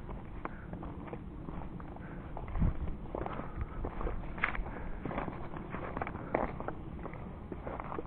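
A hiker's boot footsteps on a rocky gravel trail: irregular crunches and knocks of stones underfoot, with one louder thump about two and a half seconds in.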